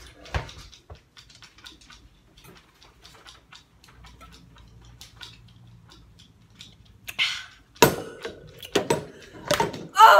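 Two people gulping down drinks, a run of faint swallowing clicks. Near the end comes a sharp gasping burst, then a few louder knocks.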